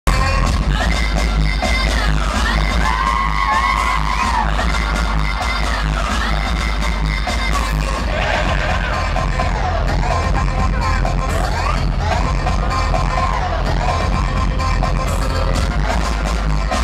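Loud live electronic pop music over a concert PA, with a steady heavy bass beat and held synthesizer lines that glide up and down in pitch.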